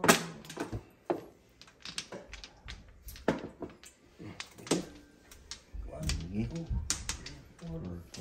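Mahjong tiles clacking on the table as players draw and discard: scattered sharp clicks, the loudest right at the start, with low voices murmuring near the end.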